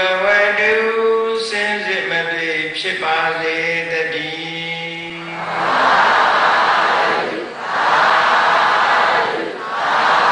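A Buddhist monk chanting into a microphone in long, held notes. About halfway through, a congregation answers in unison in three loud swells of many voices, each about two seconds long.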